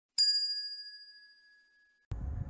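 A single bright bell-like ding, struck once just after the start, with several high tones ringing together and fading out over about a second and a half: a chime sound effect closing a logo intro.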